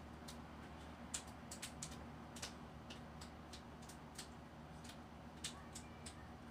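Faint, irregular small clicks and ticks, about fifteen in all and unevenly spaced, as a glass-jar candle is tilted over coins pressed into a lemon to drip wax onto them. A low steady hum sits underneath.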